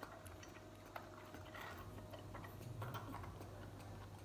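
Faint, irregular soft clicks of a baby monkey sucking milk from a feeding-bottle teat, over a steady low hum.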